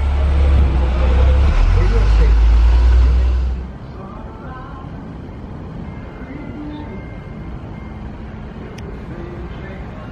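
Walt Disney World monorail pulling out of the station, heard from inside the car: a loud low rumble with a rushing hiss. It cuts off suddenly about three and a half seconds in, leaving a quiet background of faint music and voices.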